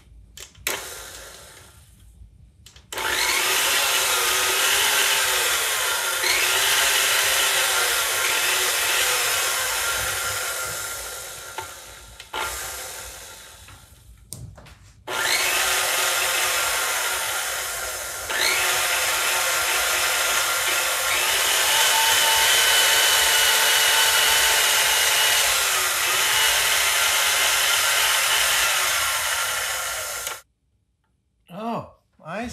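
A 20-year-old KitchenAid stand mixer's motor and gears running, under repair for a speed control fault. It starts suddenly about three seconds in, dies away and restarts about halfway through, then gets louder again shortly after, with its pitch wavering as it runs.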